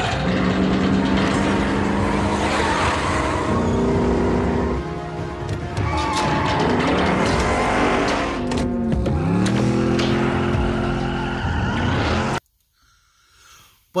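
Film soundtrack of a muscle car's engine revving and its tires squealing in a smoking burnout, mixed with a film score; it cuts off suddenly near the end.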